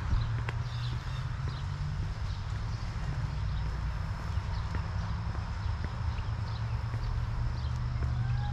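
Footsteps of a person walking on a concrete path, short irregular clicks every half second or so, over a steady low rumble with faint high chirps in the background.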